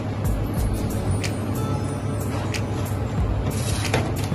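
Background music, with a few light clicks.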